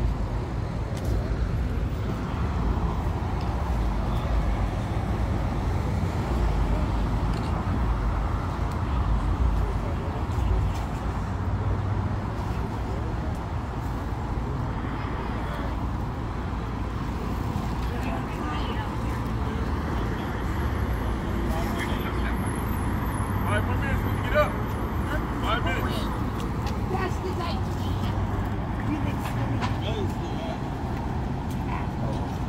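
Steady street traffic noise, with indistinct voices now and then, mostly in the second half.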